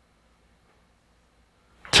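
Near silence: faint room tone, until a man starts speaking right at the end.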